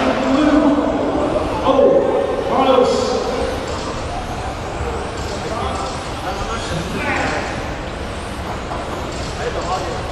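A race announcer speaking, with electric RC touring cars running on the track underneath as a steady noisy background.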